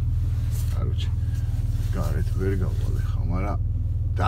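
Car engine idling, a steady low hum with an even pulse, heard from inside the cabin. A man speaks in the second half.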